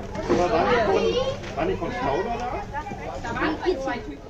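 A group of children's voices talking and calling over one another.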